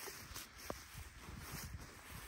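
Faint footsteps through dry grass, with two light clicks within the first second.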